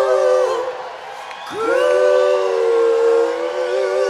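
Several voices holding a sustained chord in close harmony, with no band playing beneath them. One chord breaks off about half a second in; after a short pause the voices slide up together into a new long held chord.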